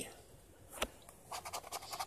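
A coin scratching the coating off a lottery scratch-off ticket: a single tap a little before a second in, then short scratching strokes from about halfway through.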